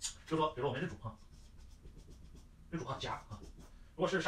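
A dry-erase marker writing on a whiteboard, faint scratchy strokes, between two short bursts of a man's speech.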